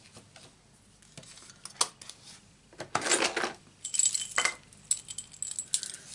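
Stamping supplies handled on a craft desk: scattered light plastic clicks and taps with short rustles, denser in the second half, as the ink pad and stamp are put away and paper pieces are moved.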